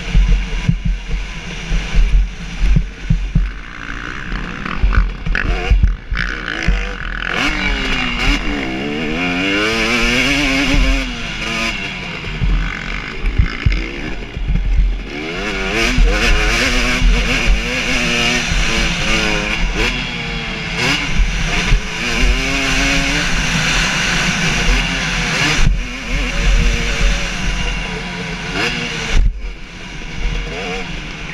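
2017 KTM 250 SX two-stroke single-cylinder engine revving up and down repeatedly as the dirt bike is ridden hard around a motocross track, with low buffeting and thumps on the onboard camera microphone.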